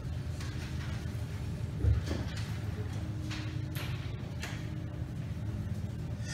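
Lull between pieces in a concert hall: a steady low hum with scattered small clicks and knocks, and one louder low thump about two seconds in.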